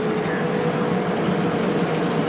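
Transit bus underway at road speed, heard from inside the cabin near the front: a steady engine and road drone with a constant hum in it.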